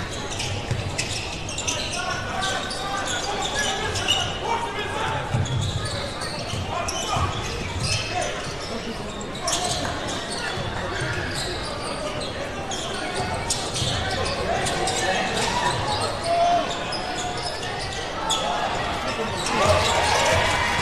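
Live game sound of a basketball being dribbled on a hardwood court in a large arena hall, with indistinct voices of crowd and players throughout.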